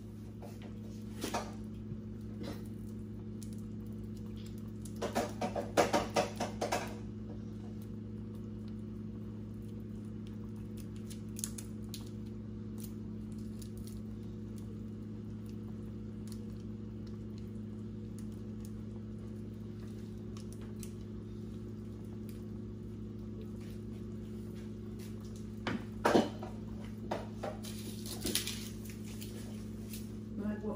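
A pot of conch stew boiling over a steady low electrical hum. Bursts of clinking from a utensil against the metal pot come about five to seven seconds in and again near the end.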